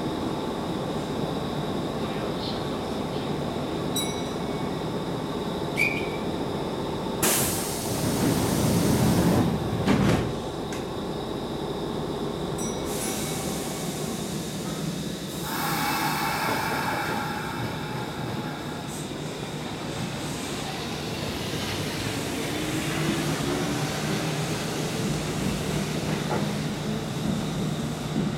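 Kintetsu 1000 series three-car electric train departing: a loud hiss and a knock as its doors close about seven to ten seconds in, then its motors' hum rising slowly in pitch as it gathers speed.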